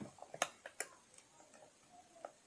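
Several short, sharp clicks of keys being pressed, unevenly spaced and most of them in the first second, as a multiplication is keyed in.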